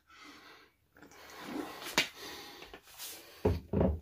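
Drinking from a plastic water bottle, with a sharp click about two seconds in, like its cap snapping shut, then a few dull low thumps near the end.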